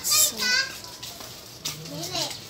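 Children's high-pitched voices chattering and calling out, loudest in the first half second, then fainter.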